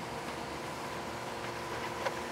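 Steady low background hum with a faint constant tone running through it: room tone, with no distinct tool or scraping sounds.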